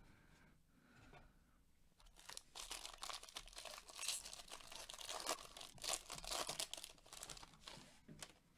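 Trading-card pack wrapper being torn open and crinkled while the cards are pulled out: quiet at first, then a run of rustling and tearing from about two seconds in that dies away near the end.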